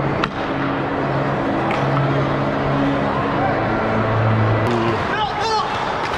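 Ice hockey play heard from the goal: skate blades scraping the ice in a steady hiss, with a sharp click just after the start and another near the end. Steady low held tones run underneath, and a short shout comes near the end.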